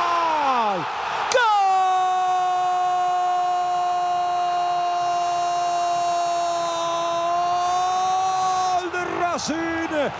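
A Spanish-language football commentator's goal cry, a long drawn-out "gooool" for the opening goal. A first held shout drops away about a second in, and a new one follows at one steady pitch for about seven seconds before he breaks back into fast speech. The stadium crowd's noise runs underneath.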